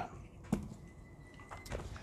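Quiet background with two brief sharp clicks, one about half a second in and one about a second later.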